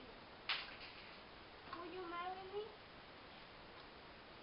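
A single sharp click or knock about half a second in, then a child's voice, faint, for about a second in a quiet classroom.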